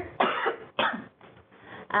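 A person coughing twice, two short sudden bursts about half a second apart.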